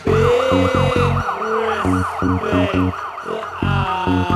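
Bassline house / speed garage track playing in a DJ mix: chopped, heavy bass stabs with a rapid siren-like warbling synth line over them, which gives way to held synth notes near the end.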